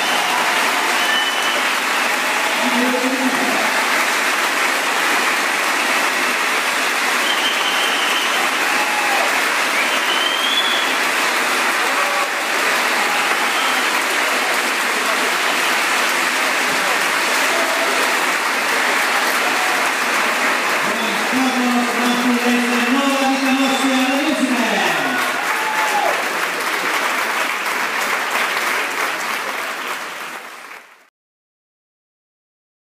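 Audience applauding steadily in a hall at the end of a dance performance, with a few voices calling out about two-thirds of the way through; the applause fades near the end.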